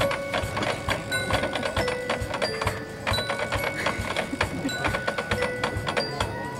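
Marching band playing, led by mallet percussion in quick repeated strikes over steady held notes.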